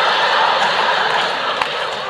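A large audience laughing together in a hall, a steady wash of laughter that fades a little toward the end.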